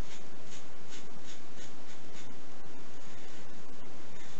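Butterfly double-edge safety razor with a fresh blade scraping through stubble under thick shaving-soap lather: a quick run of short strokes, about two to three a second, that stops a little over two seconds in.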